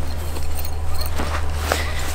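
Steady low wind rumble on the microphone, with rustling and shuffling as people move about in tall grass.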